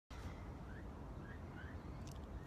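Quiet outdoor background: a steady low rumble with three faint, short rising chirps from a bird.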